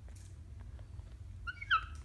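A pet parrot gives one short, high, squeaky call near the end, in two quick parts. Faint clicks from beaks touching come before it.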